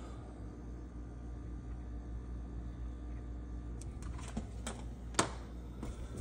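Low steady room hum, then a few light clicks and taps in the last two seconds, the sharpest about five seconds in, as plastic multimeter test probes are put down on a table.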